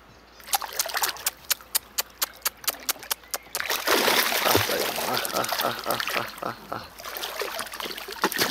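A small hooked wels catfish held on a fishing line at the water's surface, splashing in a quick series of sharp splats about four a second, then thrashing in a continuous loud burst of splashing from about three and a half seconds in.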